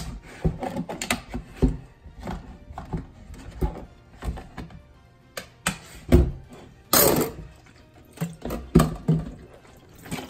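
A knife prying and scraping around a block of hardened beeswax in a plastic tub, with irregular knocks of the tub and knife against a stainless steel sink, and a short scrape about seven seconds in. Background music plays underneath.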